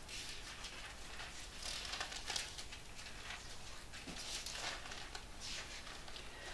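Faint, scattered rustling of Bible pages being turned in a quiet small room.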